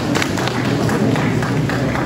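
Audience applauding in a hall: many scattered, irregular hand claps over a low crowd murmur.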